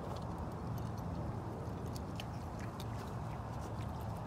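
A tiger chewing meat at close range: scattered wet clicks and smacks of its jaws over a steady low hum.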